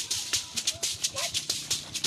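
A hand-held gourd rattle shaken in a steady quick rhythm, about six shakes a second, with brief squeaky slides from a bowed fiddle.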